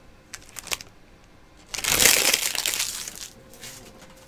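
A few light clicks of handling, then a foil pack wrapper being crumpled up. The crinkling starts loud a little under two seconds in and lasts about a second and a half.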